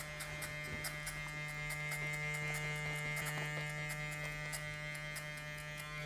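Cordless electric hair clippers running with a steady buzz, cutting hair up the side and back of the head, with faint ticks as they bite into the hair.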